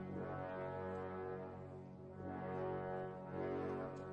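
Opera orchestra holding a soft, sustained low chord with brass to the fore, swelling slightly in the second half.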